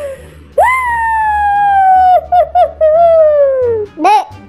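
A voice singing: a long, high held note that slides slowly downward, a few short notes about two seconds in, then another held note falling in pitch near the end.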